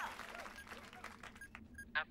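Faint rapid clicking, with a couple of short electronic beeps near the end: computer sound effects from a cartoon radar tracking screen.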